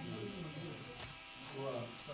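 People's voices talking in a room, with a steady faint hum underneath.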